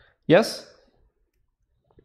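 Speech only: a man says "yes" once, briefly.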